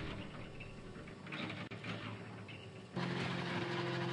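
Faint outdoor background, then about three seconds in an engine starts to be heard, running steadily at idle.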